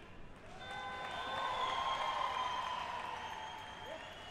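Arena crowd applauding a successful record bench-press lift. The applause swells about half a second in and eases off near the end, with a few steady high tones over it.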